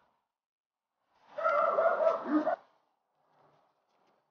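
A person's voice: one short vocal sound, held for just over a second, starting about a second in, with silence around it.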